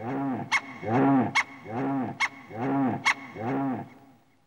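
A man wailing in comic drunken crying: a string of five long rising-and-falling cries, about one every 0.8 seconds, each broken off by a sharp gasping intake of breath.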